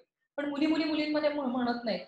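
A woman's voice: after a short pause, a long, drawn-out vocal sound with a fairly steady pitch, as in a held filler or stretched syllable in speech.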